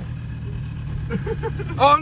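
Steady low drone of a truck driving, engine and road noise heard from inside the cabin, with a loud shouted "Oh" near the end.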